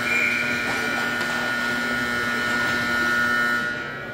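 Ice arena's horn sounding one long, buzzy blast of about four seconds that cuts off near the end.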